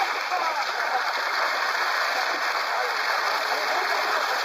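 Continuous splashing and churning water from a net full of fish thrashing at the surface against a boat's hull, steady throughout.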